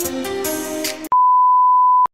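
Background music for about a second, cut off abruptly by a loud, steady 1 kHz test-tone beep of the kind played with TV colour bars, held for about a second as a transition effect.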